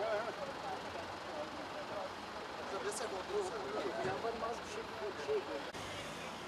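Indistinct voices of several people talking at a distance, over a steady background of vehicle and street noise. A short sharp click comes about three seconds in.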